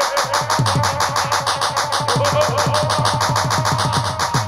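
Jatra stage music: a hand drum playing a fast, even rhythm whose bass strokes each slide down in pitch, with cymbal strikes on every beat and a melody instrument holding notes above.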